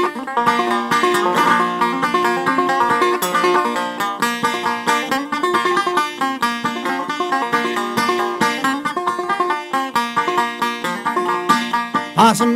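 Instrumental break in an old-time string-band song: a banjo picking a fast melody over guitar accompaniment.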